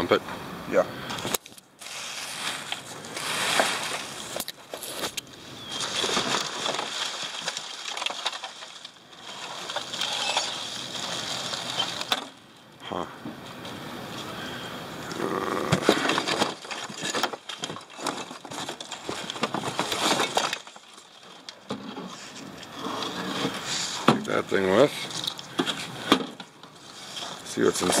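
Rummaging through dumpster debris: plastic sheeting and bags rustling and crinkling, with scattered knocks and clicks of scrap parts being handled, coming and going in irregular stretches.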